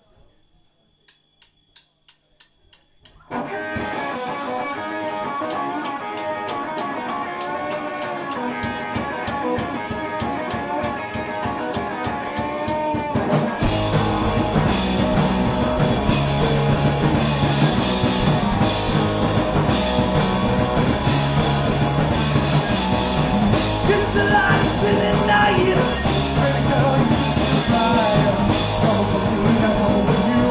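A punk rock band playing live. After a short run of evenly spaced clicks, an electric guitar starts alone over a steady ticking beat. About halfway through, the bass and full drum kit come in and the song gets louder.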